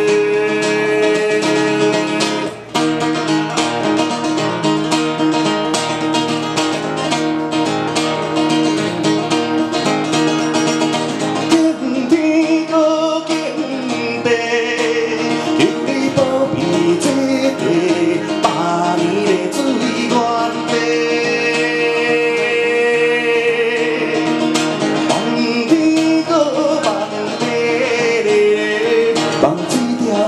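A man singing a slow song to his own strummed acoustic guitar, amplified through a stage microphone and PA, with long held notes in the melody.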